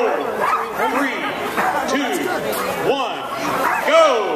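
Several harnessed sled dogs barking and yelping at once in short rising-and-falling calls that overlap throughout, with a crowd talking behind them.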